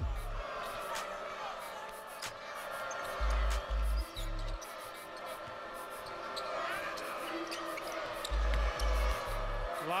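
Basketball game arena sound: a steady crowd, with a ball being dribbled in two short runs of three low thumps, and a few sneaker squeaks on the hardwood.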